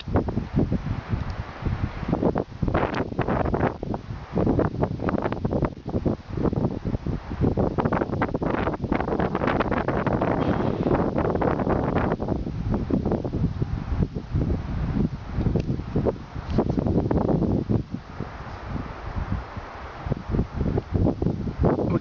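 Wind buffeting the microphone in irregular gusts, a loud, uneven rumble with no speech.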